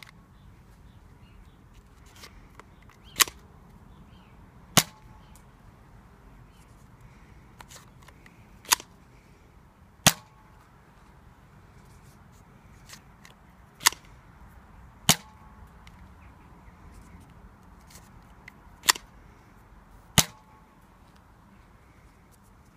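Nerf Rebelle Wild Glam single-shot spring blaster being cocked and fired repeatedly: four pairs of sharp plastic snaps, each pair about a second and a half apart, the pull-back catch followed by the plunger firing a dart. Fainter clicks of darts being loaded come between the pairs.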